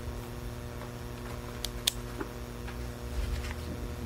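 Steady electrical mains hum with a low rumble beneath it, and two faint clicks a little before the middle.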